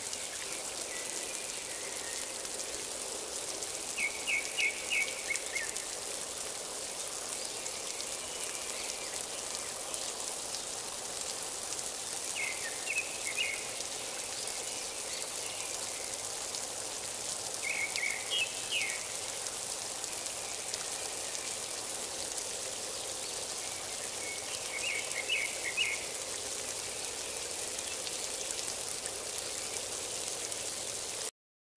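Steady rain hiss. A bird calls four times over it, each call a short run of quick high notes, roughly every six or seven seconds.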